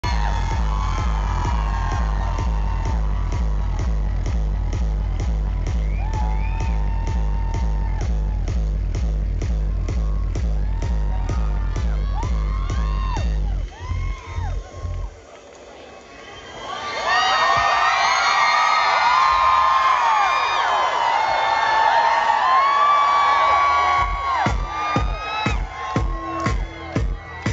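Dance music over a loud concert sound system, with a heavy, steady bass beat of about three strokes a second. The music stops, and after a brief lull a crowd screams and cheers loudly. A sharp, uneven percussive beat starts near the end.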